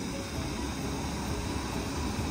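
Electric air blower of an inflatable water slide running steadily, a constant whooshing hum that keeps the slide inflated.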